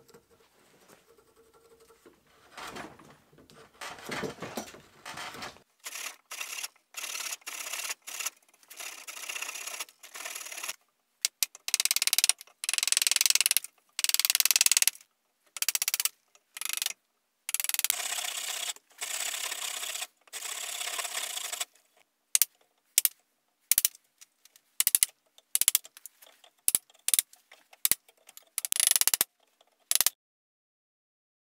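Chisel and carving knife shaving a wooden handle held in a vise: a series of scraping strokes, each a second or two long, with short gaps between them. The later strokes are crisper and louder.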